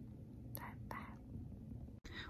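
A woman's quiet, whispery vocal sounds: two short soft breaths or syllables, about half a second and a second in, over faint room hum.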